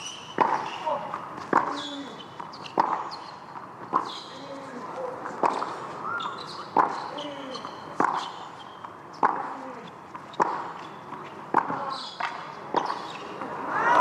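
Tennis rally on a hard court: racket strings striking the ball about a dozen times at an even pace of roughly one shot every second and a quarter. Players grunt on several shots, and short high shoe squeaks fall between the hits.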